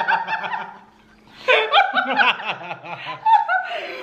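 A woman and a man laughing, hers stifled behind her hand. The laughter dies down about a second in and starts up again half a second later.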